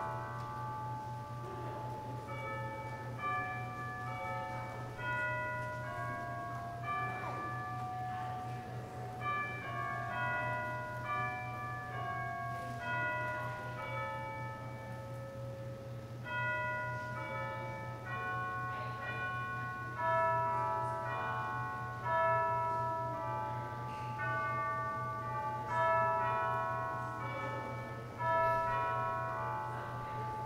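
Instrumental music of bell tones: many struck notes at different pitches ringing and fading, with stronger chords about every two seconds near the end. A steady low hum runs underneath.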